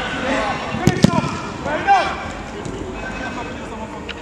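A football kicked hard on an artificial-turf pitch: two sharp thuds close together about a second in, amid players' shouts.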